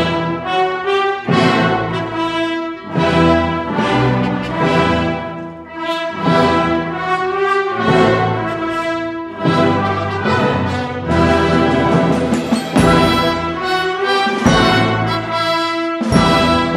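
A symphony orchestra and massed children's school wind bands of clarinets, saxophones and brass playing together, with the brass to the fore.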